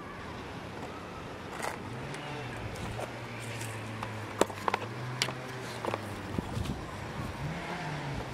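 A steady low engine hum of a motor vehicle running nearby. It comes in about two seconds in, drops away about two-thirds of the way through and picks up again near the end, with scattered light clicks and rustles of someone walking over dry grass.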